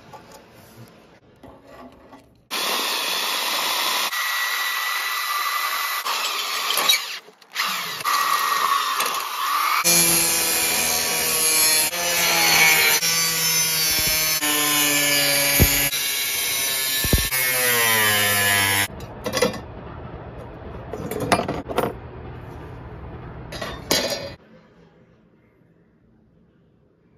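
Angle grinder with a cutting disc cutting sheet steel in long passes, with a short break about seven seconds in; its pitch wavers as it bites into the metal. It stops about nineteen seconds in, and a few seconds of quieter, broken noises follow.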